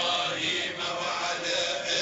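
Many voices chanting together in a continuous religious chant.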